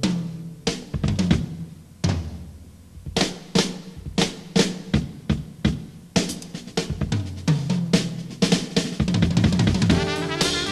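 Acoustic drum kit played solo, with snare and tom strokes, bass drum and cymbal hits. It is sparse in the first few seconds, with a lull around two seconds in, then grows busier and denser from about six seconds in.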